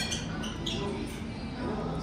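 A child's shoes squeak sharply on a polished concrete floor as she walks, a couple of short squeaks, like sneakers on a basketball court.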